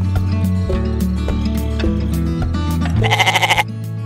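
Intro music with a steady beat, and about three seconds in a goat's bleat, a short wavering call.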